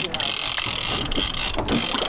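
Fishing reel's drag buzzing as a big fish pulls line off against it, with a brief break about one and a half seconds in.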